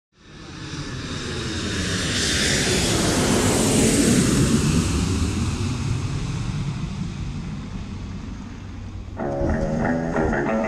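A loud, even rushing noise that swells over the first few seconds and then slowly fades. About nine seconds in, an electric guitar riff of background music starts.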